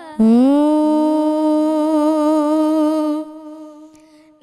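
A boy's voice singing a naat unaccompanied, holding one long note: it slides up into the note at the start, holds it steady, and fades out about three seconds in.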